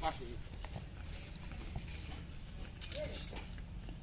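Faint voices of people talking at a distance over a steady low rumble, with a few light knocks.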